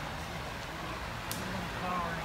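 Indistinct voices of people talking in the background over a steady noise, with one brief sharp click about a second and a half in.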